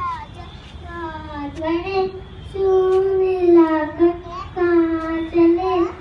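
A young child singing in a high voice, in long held notes with short breaks between phrases.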